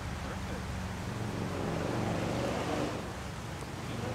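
Steady rush of a rocky mountain creek, with wind buffeting the microphone as a low rumble.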